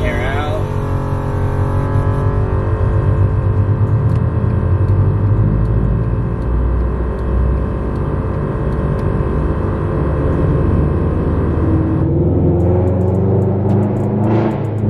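Scion FR-S's flat-four engine, fitted with Tomei titanium headers and exhaust, running at low revs from inside the cabin as the car rolls slowly. Near the end a few sharp crackles and pops come from the exhaust on the pops-and-bangs tune.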